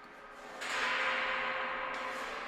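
A title-sequence sound effect: a noisy whoosh that swells sharply about half a second in and then holds, with a faint ringing tone underneath.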